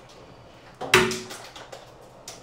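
A sharp knock about a second in, then a few lighter clicks and rattles: someone rummaging through workshop supplies while hunting for a marker.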